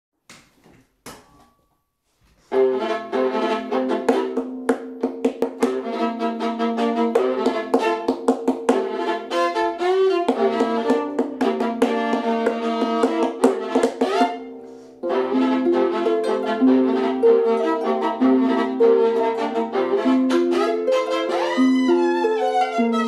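A viola and a small harp playing a tune together as a duet: sustained bowed notes over plucked harp strings. After a few soft clicks, the music starts about two and a half seconds in. It breaks off briefly around fourteen seconds and then carries on.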